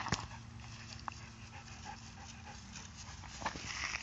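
Silver fox panting with its mouth open, with a sharp click just at the start.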